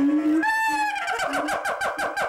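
A monkey calling: one high call, then a quick run of repeated calls at about six a second.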